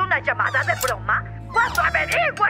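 High-pitched cartoon creature voices chattering in quick, squeaky wordless calls over steady background music.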